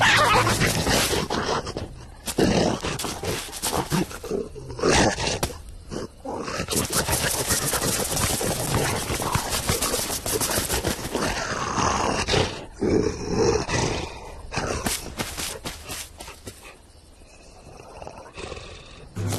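Cartoon animal sound effects: growls and roar-like vocalizations over busy scrambling and scuffling noise, quieter near the end.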